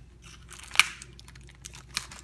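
Plastic film on a frozen-meal tray crinkling and crackling as fingers pick at a corner to peel it up for venting; scattered crackles begin about half a second in, the sharpest near the first second.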